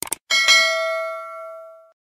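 Two quick mouse-click sound effects, then a bright notification-bell ding that is struck again a moment later and rings out for about a second and a half before cutting off.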